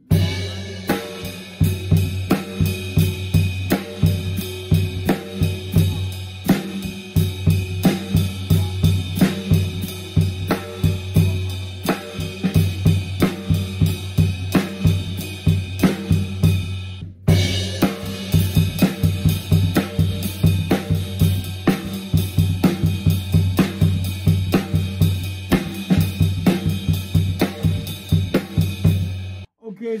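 Drum kit playing a slow verse groove on the ride cymbal with snare and bass drum, opening with a crash cymbal hit. The pattern stops briefly about 17 seconds in and then starts again.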